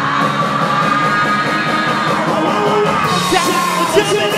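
Hard rock band playing: a male singer holds one long high note that eases down in pitch near the end, over electric guitars, bass and drums.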